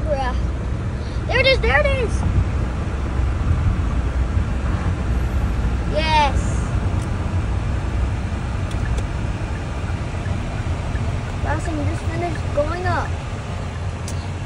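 Steady low road and engine rumble heard inside the cabin of a car moving at about 50 mph, with a few short voice calls over it.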